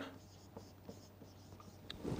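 Marker pen writing on a whiteboard: a string of short, faint strokes as figures and letters are written.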